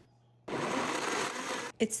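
Blendtec high-speed blender running briefly, puréeing roasted vegetables into soup: a steady whir that starts about half a second in and cuts off abruptly just before the end.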